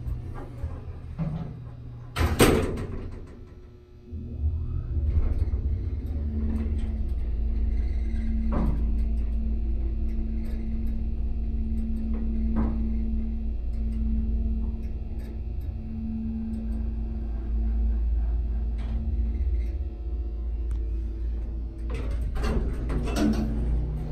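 Dover passenger elevator: the doors shut with a loud slam about two seconds in, then the car travels with a steady low rumble and a humming tone. Near the end the doors clatter open.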